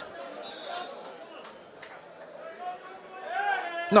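Faint voices of players and onlookers around an outdoor football pitch during a lull in play, with a louder call carrying across the field near the end.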